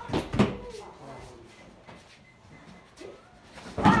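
Karate kicks against a resistance tube: two sharp snaps in the first half second, a quieter stretch, then near the end a loud shouted kiai with another kick.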